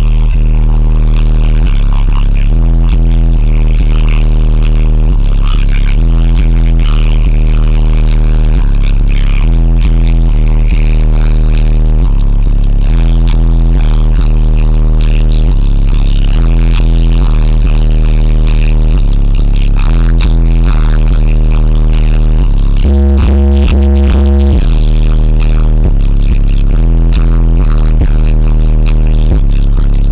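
Bass-heavy electronic music played very loud through a car-audio system's two large subwoofers in a wooden enclosure, deep bass notes held and changing in steps, with an especially heavy low note about three quarters of the way through.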